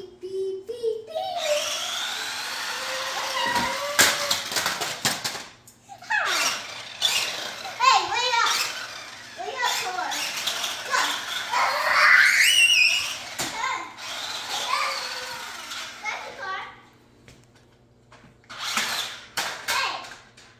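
A toddler squealing and babbling excitedly, with high rising squeals, broken by a few sharp knocks.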